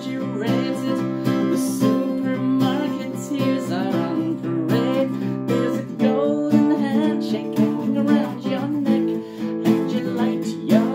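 Acoustic guitar being strummed and picked in a discordant, energetic rock song, with a man's voice singing over it.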